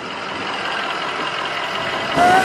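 Steady vehicle noise, a hum with faint steady tones that slowly gets louder.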